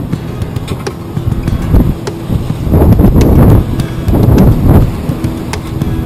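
Wind buffeting the microphone and water rushing along the hull of a sailing yacht under way, a low rumble that swells twice around the middle.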